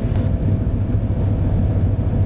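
Steady drone of a small plane's engine and propeller heard inside the cockpit, as the plane rolls along the runway after landing.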